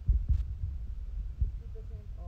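Dull low thumps and rumble of handling noise from a handheld phone being moved around, the loudest near the start and another just past the middle.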